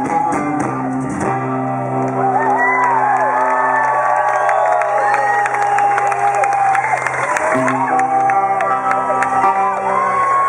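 Live band with electric and acoustic guitars playing long, held chords that change about a second in and again near the end, with crowd voices over the music.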